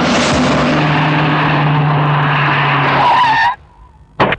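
A loud, steady rushing noise over a low hum, cut off suddenly about three and a half seconds in.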